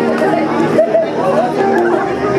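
Many people chatting at once, with music playing underneath: held steady notes under the talk.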